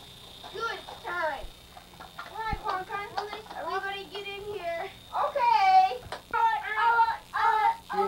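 High-pitched voices of young children talking and babbling, their pitch gliding up and down, with a faint steady high whine underneath.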